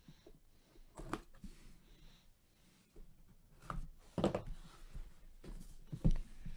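Handling of a tape-sealed cardboard box: a few short scrapes and knocks, about one second in and again three times in the second half, as the box is worked open.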